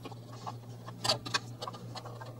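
A few light clicks and taps of small plastic fan-cable connectors being unplugged and handled inside a metal server chassis.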